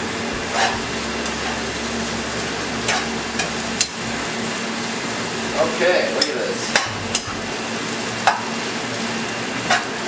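Flat rice noodles, Chinese broccoli, chicken and egg stir-frying in a wok over a high gas flame: a steady sizzle, with a metal spatula scraping and knocking against the pan at irregular moments, about every second or so.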